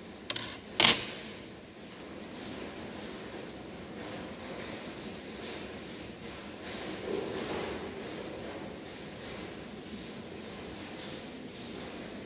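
Handling noise as gloved hands position a preserved brain specimen and ready a knife for cutting: a sharp knock about a second in, then steady background noise with faint rustling.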